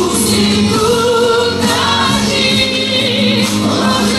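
Live music: a group of amateur voices singing a Russian song together in chorus, the notes held and wavering, one voice carried over a microphone.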